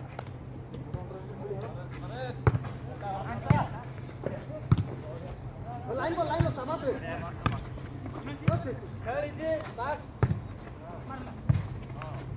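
A volleyball being struck by hand during rallies: about ten sharp slaps, roughly a second apart, with players shouting and calling to each other between the hits.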